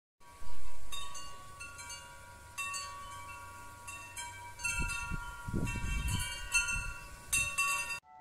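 Metal tube wind chime ringing, its tubes struck again and again so that several clear tones overlap and ring on. The first strike, about half a second in, is the loudest.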